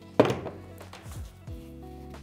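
A single thunk about a quarter second in as the crampons and boot are handled on the wooden tabletop, over quiet background music holding steady notes.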